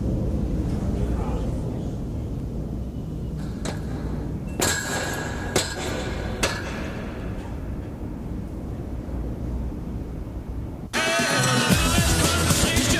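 Low steady rumble broken by three sharp knocks with a short ring, about a second apart, a third of the way in. Loud music cuts in suddenly about a second before the end.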